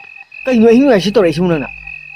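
A croaking call, heard once for about a second, its pitch wavering up and down. A steady high-pitched tone sounds throughout.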